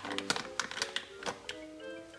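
Background music, with a quick run of light clicks and taps through the first second and a half: a spoon working turmeric ginger paste out of a plastic squeeze bottle into a glass blender jug.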